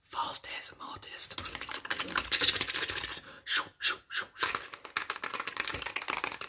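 Fast, close-up whispering mixed with a rapid run of clicking and tapping sounds right at the microphone, a deliberately hurried ASMR trigger.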